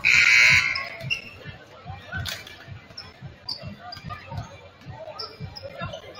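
A scoreboard buzzer sounds once, loud and brief, at the start. Then several basketballs bounce on a hardwood gym floor at an uneven pace, with a few sneaker squeaks over voices in the gym.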